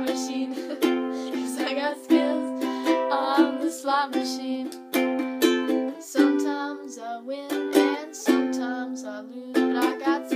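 Ukulele strumming chords at an even pace of about two strums a second, an instrumental break between verses, with a chord change and a softer passage about six seconds in.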